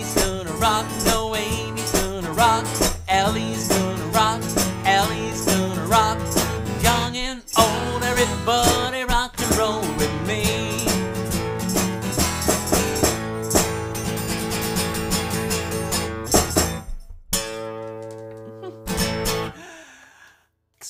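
A man singing a rock-and-roll children's song to his own strummed acoustic guitar. The singing drops out about two-thirds of the way through, leaving the guitar strumming; after a brief break the guitar ends on a final strummed chord.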